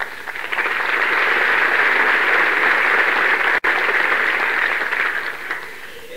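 Theatre audience applauding after a song. The applause swells within the first second, holds, and dies away near the end, with a momentary dropout in the recording about midway.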